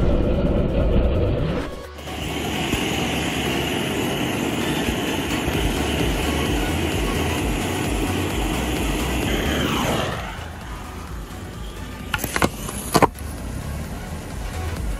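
Two gas torches burning with a steady roar as they heat a steel lag screw, then cutting off about ten seconds in. A few sharp clicks follow near the end.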